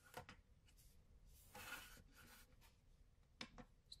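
Near silence, broken by a few faint clicks and a brief soft rub as a small plastic digital pocket scale is handled and taken out.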